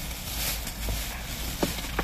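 Steady low background hum and hiss with two faint short clicks, one about halfway through and one near the end.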